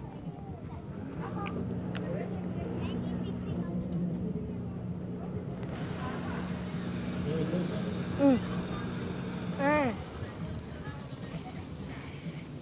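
A boat engine running with a steady low hum over harbour ambience and scattered voices. Near the end, two loud, short cries stand out, the second about a second and a half after the first, and the hum stops just after the second.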